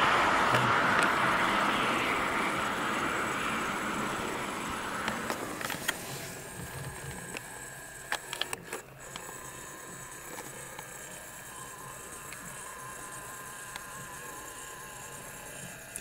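Road noise of a passing car fading away over the first several seconds, leaving a faint steady background with a few light clicks.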